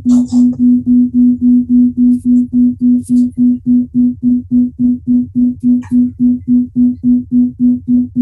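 A single electronic keyboard note pulsing evenly, about three and a half pulses a second, at one unchanging pitch.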